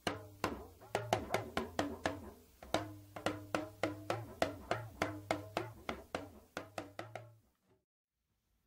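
A solo lunga, the Dagbamba hourglass talking drum, struck in a quick, uneven rhythm of about three strokes a second, each stroke ringing with a short, bending pitch. The pitch gradually rises as the player squeezes the drum's cords with his forearm. A steady low hum sits underneath.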